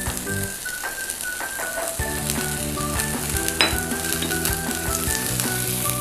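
Chopped vegetables sizzling as they are stir-fried with a spatula in a small frying pan on a portable gas burner, with light background music underneath.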